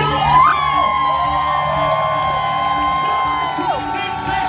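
A singer holds one long high note over live band accompaniment, swooping up into it and sliding down off it near the end, while the audience whoops and cheers.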